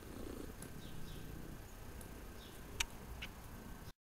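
Domestic long-haired cat purring steadily, with two sharp clicks near the end. The sound cuts out just before the end.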